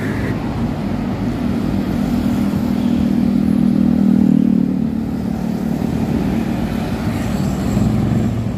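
Road traffic: a large coach bus and motorcycles driving past, a steady low engine drone that grows to its loudest about halfway through and then eases off.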